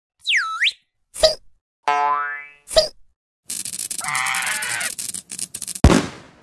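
A string of cartoon sound effects: a quick pitch swoop down and back up, a knock, a rising glide, a second knock, then about two seconds of rattling noise that ends on a sharp hit.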